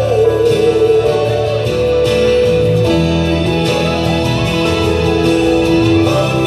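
Live ballad: acoustic guitar and keyboard accompaniment with long held sung notes, one note sliding up in pitch about halfway through.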